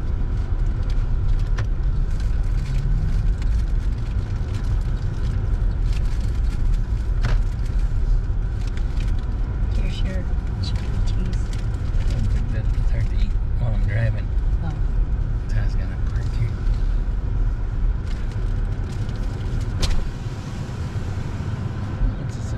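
Car cabin noise while driving slowly: a steady low rumble of engine and tyres with a few small clicks. About two seconds before the end the rumble drops as the car slows to a stop.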